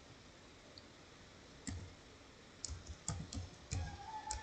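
Computer keyboard keys being typed, faint: one keystroke a little before the halfway point, then a quick scatter of several more keystrokes in the last second and a half.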